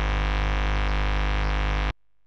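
Steady, heavily distorted hum and buzz from an electric guitar's bridge single-coil pickup, pushed through a 24 dB gain boost and a fuzz plugin with nothing being played. It switches on suddenly and cuts off abruptly just before the end as the noise gate closes on it.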